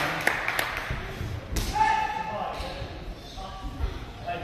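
A man's voice calling out in a large, echoing hall, with a few light knocks near the start and one sharp slap about a second and a half in.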